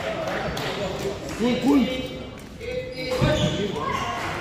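Voices in a large, echoing sports hall, with a few short knocks from the badminton court.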